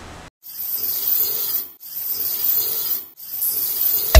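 Hissing, spray-like whoosh sound effect for an animated logo, starting after a short silence and running in three stretches broken by brief dips about two and three seconds in.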